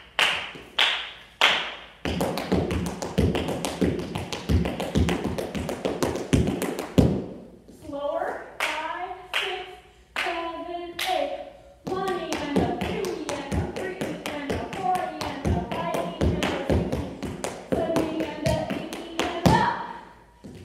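Tap shoes striking a hard studio floor in fast, dense runs of taps, a paradiddle-based step with digs, heels and steps. The runs break off briefly a little past a third of the way in, then start again and run close to the end, with a woman's voice sounding over and between them.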